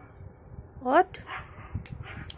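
A dog's single short yelp, rising sharply in pitch, about a second in. Two sharp clicks follow near the end.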